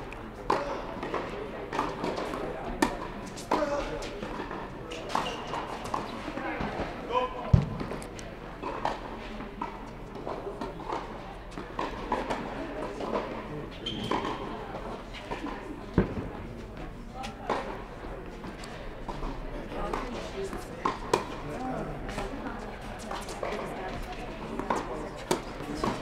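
Tennis balls being struck by rackets and bouncing on an indoor hard court, a string of sharp pops and knocks with echo from the hall, over background voices talking. Two louder thumps stand out, about a third and two-thirds of the way through.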